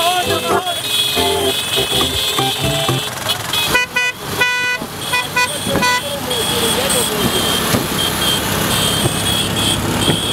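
Motorcycle horns sound in a quick run of four or five short toots starting about four seconds in. Around them are people's voices shouting and the running of a column of motorcycles.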